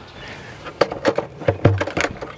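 Handling noises from a portable car fridge's metal lid latch: a run of sharp clicks and knocks starting just under a second in, with a couple of duller knocks in the second half, as a hand reaches in and takes hold of the latch.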